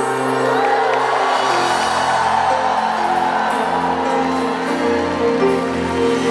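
Live concert music playing at a slow, tender pace, with a large arena crowd cheering and whooping over it from about half a second in, fading near the end.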